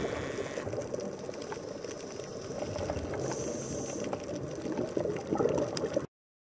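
Underwater sound picked up through a camera housing: a steady bubbling, crackling rumble with scattered small clicks, and a brief high hiss a little past halfway.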